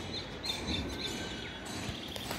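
A small bird chirping: several short, high chirps in the first second, over steady outdoor background noise.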